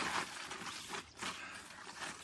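Plastic wrapping and paper rustling and crinkling in irregular bursts as food is unwrapped and handled at the table.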